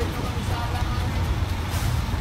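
Large truck's engine idling close by, a steady low rumble, with voices faintly heard over it.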